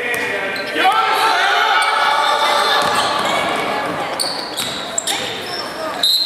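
Basketball game in a large gym: voices of players and spectators calling out over a basketball dribbling on the hardwood court, with a few short high sneaker squeaks near the end.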